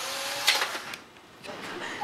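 A small motor whirring steadily with faint tones in it and a sharp click about half a second in. It stops about a second in and starts again, fainter, near the end.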